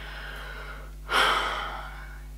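A woman's single audible breath about a second in, a short sharp gasp that fades away over half a second, against faint room hiss.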